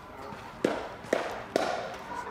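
Three sharp knocks about half a second apart, each with a short ringing tone, starting about two-thirds of a second in.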